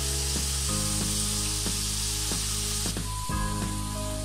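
Prawns in spiced gravy sizzling and bubbling in a wok. The sizzle eases about three seconds in.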